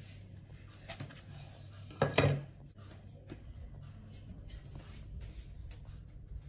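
Edge of a wooden ladle cutting through bread dough and knocking on a wooden cutting board: light taps and scrapes, with one sharp knock about two seconds in. A low steady hum runs underneath.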